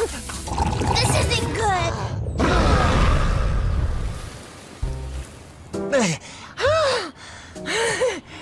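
Cartoon sound effects over background music: a few short vocal sounds, then a loud rushing blast lasting about two seconds as the sand castle is blown apart into a cloud of sand, followed by short gliding cartoon sounds near the end.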